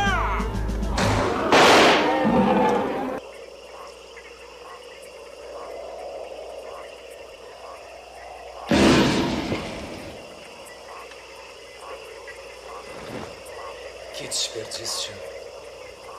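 A man shouting, with a loud sharp bang like a revolver shot about a second and a half in. Then a steady night chorus of frogs begins, broken about nine seconds in by a sudden loud noise lasting about a second.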